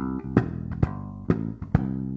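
Electric bass guitar playing a steady, even line of sharply attacked notes, a little over two a second.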